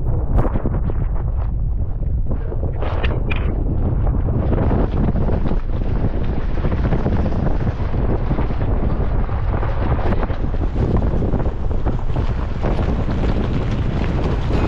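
Heavy wind buffeting the microphone of a camera mounted outside a Jeep Gladiator as it drives along a gravel track, over a steady low rumble of the tyres on gravel.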